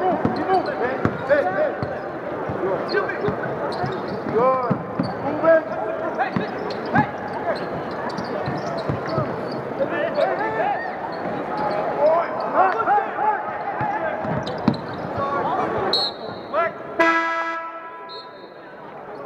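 Live basketball play on a hardwood court: sneakers squeaking in many short chirps, the ball bouncing, and players calling out. Near the end a short steady horn sounds from the scorer's table, signalling a substitution.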